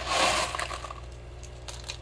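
Expanded clay pebbles (hydroton) rattling and scraping as they are pressed by hand into a hydroponic net pot around a root ball: a brief gritty rush about half a second long at the start, then a few faint clicks.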